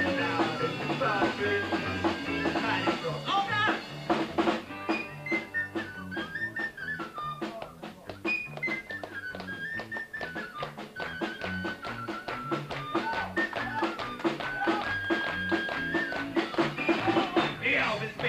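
Live rock band playing with guitars, bass and drums keeping a steady beat, and a harmonica taking the lead melody from about four seconds in, bending up and down over the band.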